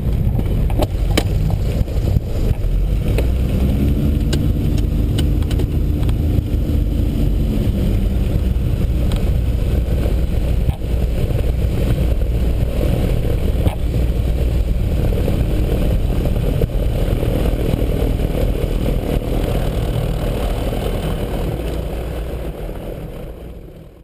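Twin engines and propellers of a Piper PA-34 Seneca II running at low power, heard in the cockpit as the aircraft rolls out after landing: a steady low drone, with a hum laid over it from about 4 to 8 seconds in. It fades out near the end.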